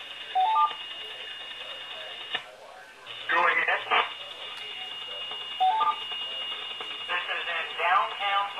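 Radio repeater courtesy tone on the Skywarn net: a quick three-note rising beep, heard twice, about half a second in and again near six seconds. It sits over steady radio hiss, with short noisy bursts of stations keying up in between.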